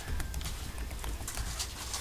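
Computer keyboard being typed on, a quick run of key clicks over a low steady hum.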